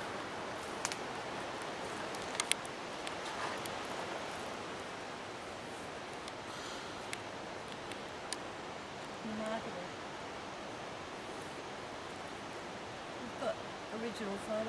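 Steady outdoor rushing noise in forest, with a few sharp clicks. A low voice murmurs briefly about two-thirds of the way in.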